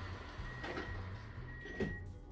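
Train's sliding passenger doors closing: a high steady warning tone sounds in two long stretches over the low hum of the train, and the doors thump shut near the end.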